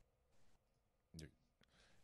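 Near silence from a video-call feed whose audio is cutting out, broken by one short clipped word about a second in.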